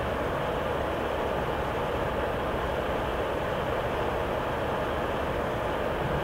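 Steady, unchanging background hiss with a low rumble under it, the noise floor of the narration microphone.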